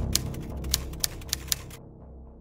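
Typewriter keystroke sound effect: about five separate key clacks at uneven spacing, stopping a little before the end, over low intro music that fades out.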